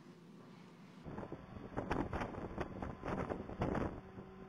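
Wind buffeting an outdoor microphone, starting suddenly about a second in and coming in irregular louder gusts.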